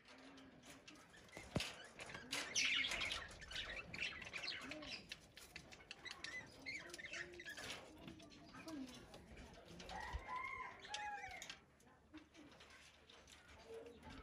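Budgerigars chirping and chattering at a seed dish, with many small clicks and short wing flutters among them. A low, repeated cooing runs underneath, with a clear run of chirps about ten seconds in.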